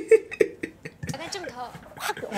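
Short, quick bursts of laughter in the first second, then quiet talking.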